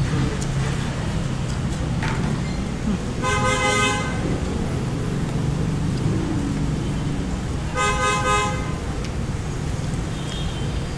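A horn-like toot sounds twice, about five seconds apart, each blast lasting under a second, over a steady low background hum.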